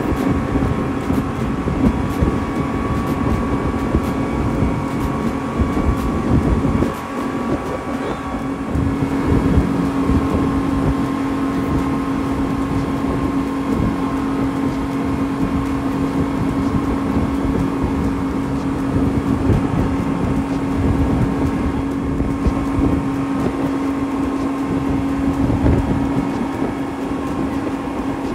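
A speedboat's outboard motors, a bank of three Honda outboards, running at speed: a steady engine drone that stands out more clearly from about eight seconds in, under a heavy rushing rumble of wake spray and wind.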